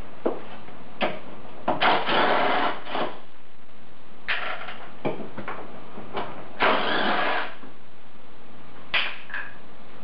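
Hand tools being worked on engine parts: scattered metallic clicks and knocks, with two longer scraping stretches, about two seconds in and again about seven seconds in.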